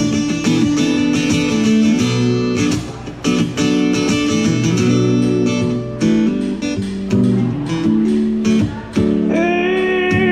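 Acoustic guitar strumming chords in a steady rhythm, an instrumental break in a live solo performance of a country song. Just before the end a voice comes in on a held sung note.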